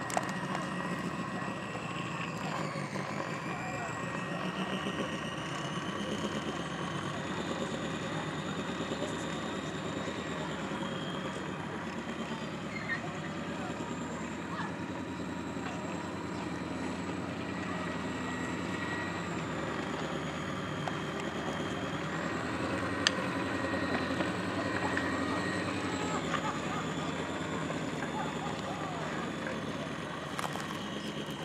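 Electric drive motor of a radio-controlled Tito Neri model tug boat running on the water: a thin whine whose pitch slowly rises and falls, over steady outdoor background noise.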